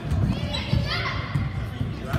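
Children's shouts and calls echoing in a gymnasium during an indoor youth soccer game, with low thuds from play on the court.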